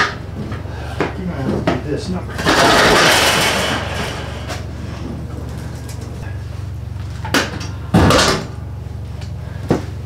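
The front door of a Pepsi vending machine is worked open and later shut: a rushing scrape of over a second early on, then knocks and a heavy thud near the end, with a click just before the end. A steady low hum runs underneath.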